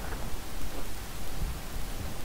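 Steady hiss with a low rumble: the background noise of a desk recording setup, with one or two faint clicks.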